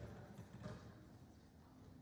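Near silence: room tone, with a faint soft thump a little over half a second in.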